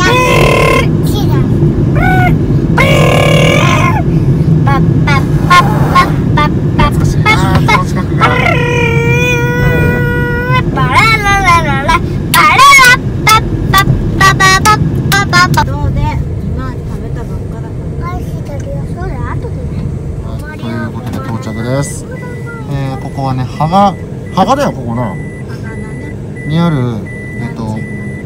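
Steady road and engine rumble inside a moving car's cabin, which drops off about sixteen seconds in as the car slows, with voices talking and calling out over it. A faint high intermittent beep runs through the last few seconds.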